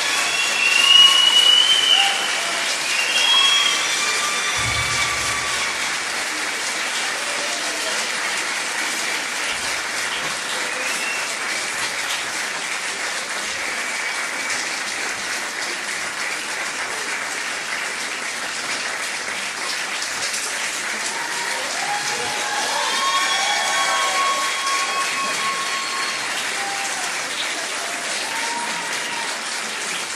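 Audience applauding steadily, with cheering shouts loudest in the first few seconds and rising again shortly before the end.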